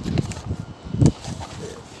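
Handling noise from a plastic display base with a cardboard backing board being tilted over in the hands: rustling and light knocks, with one louder knock about a second in.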